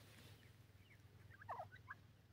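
Grey francolins giving soft, short chirping calls at close range, a few scattered ones and then a quick cluster about a second and a half in.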